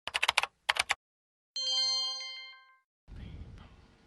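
A quick run of about ten sharp clicks like typing keystrokes within the first second, then a single bell-like ding about one and a half seconds in that rings out and fades over about a second. Low rumbling room noise follows near the end.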